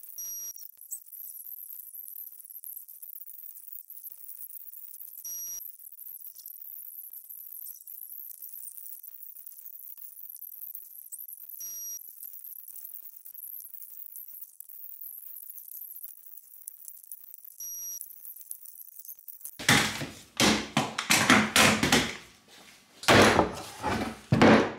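A faint steady hiss with a soft tick about every six seconds, then, from about twenty seconds in, loud irregular knocking and clattering of wooden strips as they are pushed and tapped together on a bench.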